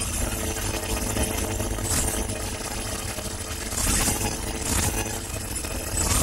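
Dense electronic glitch noise: a heavy low rumble under steady buzzing tones, with swells of bright hiss about every two seconds.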